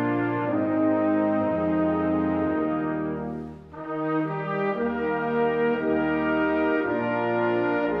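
Slow brass-ensemble music playing long held chords, with a brief break between phrases about halfway through.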